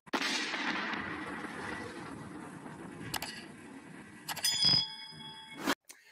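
Logo-animation sound effects: a rushing whoosh that fades over the first three seconds, a short click a little later, then a metallic clang whose ringing tones die away about a second after it.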